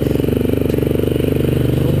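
Motorcycle engine running steadily with a fast, even beat.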